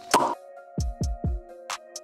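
Short electronic music transition sting: a sustained synth chord with a loud hit just after the start and three quick bass thumps falling in pitch about a second in.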